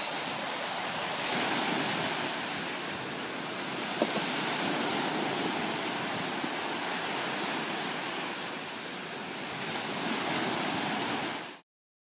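Small waves breaking and washing up a sandy shore in a steady hiss of surf, swelling as a wave comes in. There is a brief tap about four seconds in, and the sound cuts off abruptly near the end.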